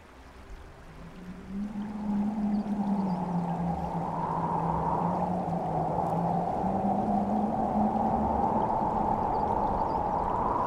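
A gust of wind builds over the first couple of seconds into a steady howl that wavers and swells again near the end. Beneath it a low droning tone steps down in pitch and back up.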